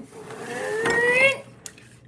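A person's long wordless vocal sound, a held note that rises slightly in pitch and grows louder for about a second and a half, then a short click.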